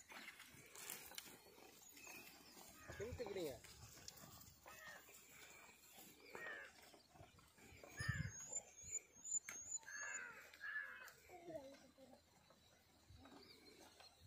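Faint, scattered voices calling out, low overall. About eight seconds in, a bird gives a quick run of about six high chirps.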